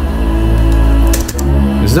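Ambient synth track playing back: a held pad chord over a deep, steady bass. A few quick clicks come a little past a second in.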